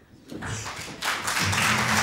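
Audience applause breaking out about a second in and going on loud and dense, with low sustained music underneath.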